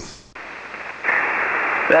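Shortwave single-sideband receiver hiss on the 40-metre band: after a brief dip, a steady static hiss with nothing above the voice range comes in and grows louder about a second in as the distant station keys up, with his voice starting near the end.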